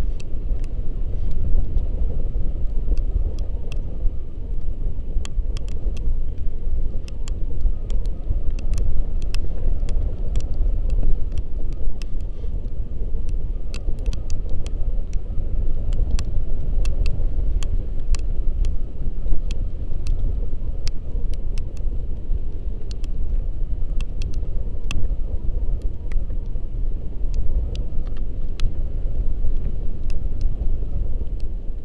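Wind rushing over the camera's microphone on a tandem paraglider in flight: a loud, steady low rumble, with scattered faint clicks throughout.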